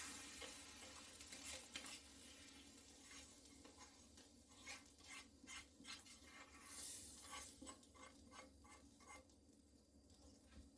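Faint sizzle of hot curry-and-onion oil poured from a frying pan onto vegetables in a metal bowl, dying away over the first few seconds. Soft, scattered scrapes follow as a spatula empties the pan.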